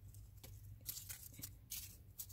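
Quiet background with a steady low hum and a few faint, short rustles, the sort made by handling near a cloth and dry leaves.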